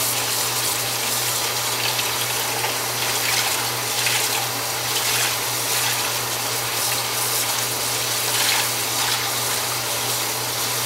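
Kitchen tap running steadily, its stream splashing over a skein of wet wool yarn being rinsed by hand above a plastic colander in the sink.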